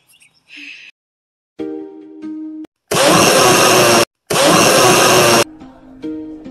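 A few plucked ukulele notes, then two loud, harsh buzzing blasts of noise about a second each, with a short break between them: an edited-in sound effect.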